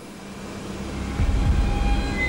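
A deep rumble that swells up from under a second in and grows louder, with faint steady high tones above it.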